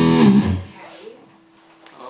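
Fender Stratocaster electric guitar played loud through distortion: a held note that bends slightly in pitch, then is cut off about half a second in.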